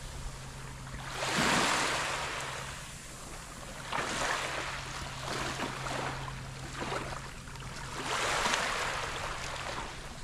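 Small waves washing onto a sandy beach, swelling and falling back three times, with a steady low hum underneath.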